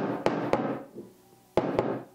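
Knocks of a ceramic cup being set down and handled on a wooden tabletop: two sharp knocks at the start and two more about a second and a half in, each followed by a brief fading hiss.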